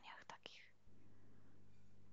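The soft tail of a woman's speech and breath in the first half second, then near silence with a faint, steady low hum.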